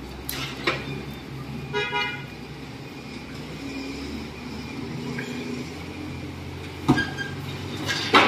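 A vehicle horn toots once, briefly, about two seconds in, over a steady low engine hum. Sharp knocks come near the start and, loudest, about seven seconds in.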